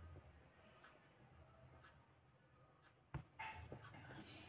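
Near silence: faint room tone with a steady high-pitched chirping, about six chirps a second, and a single sharp click about three seconds in.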